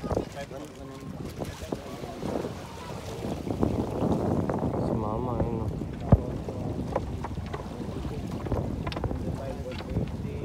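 Wind on the microphone aboard a small wooden outrigger fishing boat, with people talking in the background. A single sharp knock about six seconds in is the loudest sound.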